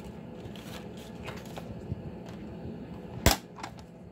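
Quiet handling of a plastic sliding paper trimmer and cardstock strips: a few faint taps and rustles, then one sharp click a little past three seconds in.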